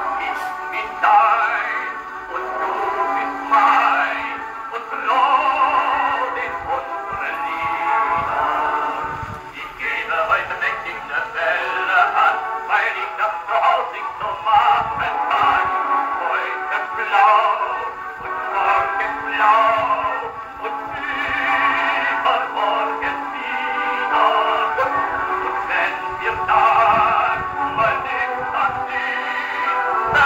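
Wind-up horn gramophone playing a 78 rpm record: a singer with a wavering, vibrato voice and accompaniment. The sound is thin and narrow, with almost no deep bass or high treble.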